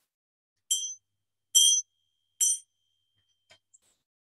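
A small bell struck three times, evenly spaced, each strike a bright high ring that is cut short, with a faint tone hanging on after the last: the bell marking the end of a yoga practice.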